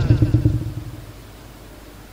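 A low rumble fading away over about the first second, then faint steady room tone.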